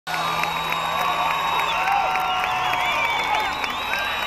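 Concert audience cheering, with many short high whoops and screams rising and falling over the crowd noise.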